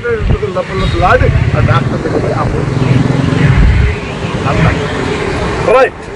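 A man speaking in short stretches over a steady low rumble from a nearby motor vehicle, the rumble strongest for the first four seconds or so.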